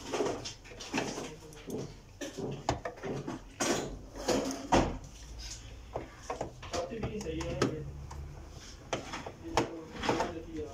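Irregular clicks and knocks of plastic and metal parts being handled inside an opened Epson LQ-310 dot matrix printer, with voices talking in the background.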